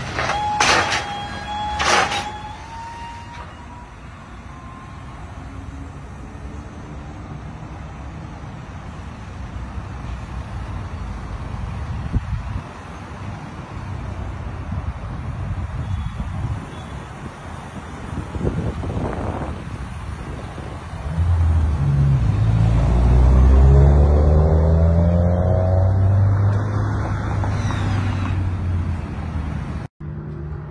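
A new Toyota Land Cruiser being unloaded from the steel ramps of a car-carrier trailer: two sharp metal clanks about a second in, then a steady engine and road rumble. From about 21 s a louder, deep engine rumble swells and rises in pitch for several seconds.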